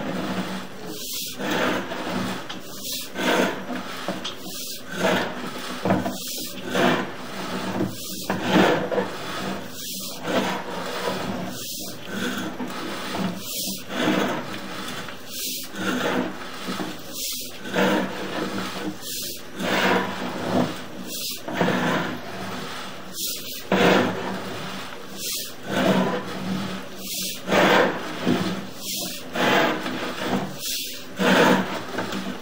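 Sewer inspection camera push cable sliding and rubbing as it is fed down the sewer line, a scraping stroke about every two seconds.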